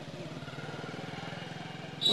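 A small engine idling steadily, with a fast, even throb.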